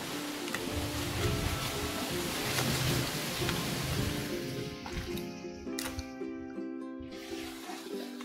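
Background music of sustained, held notes, over a steady hiss that drops away about five seconds in.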